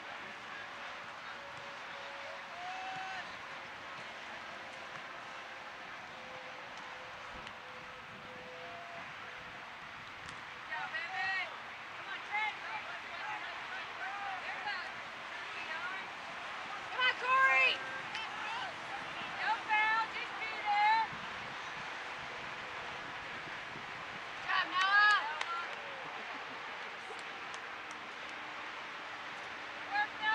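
Distant voices shouting short calls across an outdoor soccer field during play, over a steady outdoor background hiss. The calls come in scattered bursts from about a third of the way in, loudest around halfway through and again near the end.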